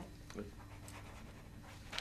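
Quiet meeting-room tone with a steady faint electrical hum, after a brief spoken 'aye' near the start.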